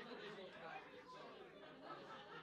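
Faint background chatter of several people talking in a room.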